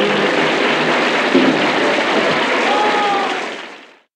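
Television studio audience applauding after a jazz number, heard on an old home acetate-disc recording of the broadcast. The applause fades out to silence in the last half second.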